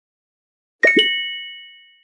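Two-note chime sound effect for an intro logo: two quick strikes less than a quarter second apart that ring with bright tones and fade over about a second.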